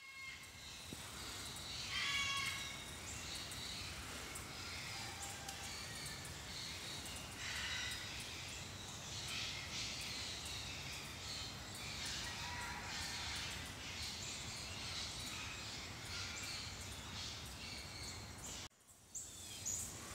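Faint outdoor ambience with scattered bird calls, one clearer, drawn-out call about two seconds in.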